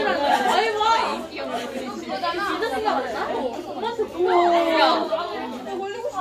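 Students chattering and talking over one another in a classroom, several voices at once. A little after four seconds in, one voice holds a steady note for under a second.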